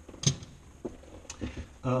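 Pliers and a coil of wire set down on a cluttered work table: three light knocks about half a second apart, the first the loudest.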